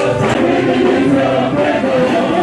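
A choir singing a gospel praise song with instrumental backing, loud and steady.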